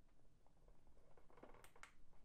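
Near silence, with two faint sharp clicks in quick succession near the end: a finger pressing the power button on a Beelink Mini S12 Pro mini PC.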